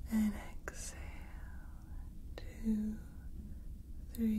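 Soft whispering, two short utterances about two and a half seconds apart, over a steady low starship engine-hum ambience.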